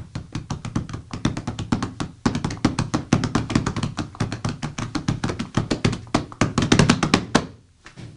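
Hands drumming a fast rhythm on a briefcase held on the lap, a quick, dense run of taps and hollow thunks that stops abruptly near the end.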